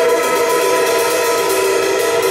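Live band music: held, ringing chords sustained over drums, loud and steady.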